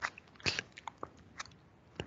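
A few short, faint clicks and ticks, scattered about half a second apart.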